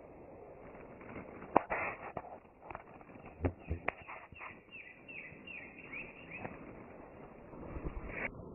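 Movement through forest undergrowth with a few sharp cracks, like snapping twigs; the loudest comes about one and a half seconds in. Midway a bird gives a quick run of short chirps, about three a second.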